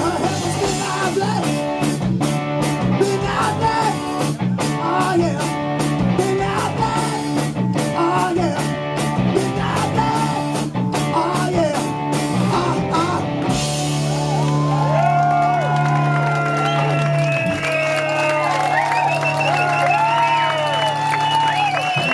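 Live rock band with drums, electric guitars, bass and vocals playing a driving beat. About halfway through, the beat stops and the band holds a long final chord, with high bending notes ringing over it.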